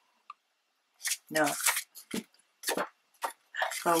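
Sheets of scrapbook paper being handled and folded, making a few short, separate rustles.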